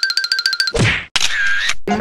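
Edited-in sound effects: a fast pulsing electronic tone, then a falling swoosh that cuts off suddenly, followed by a short hissing effect with a wavering tone.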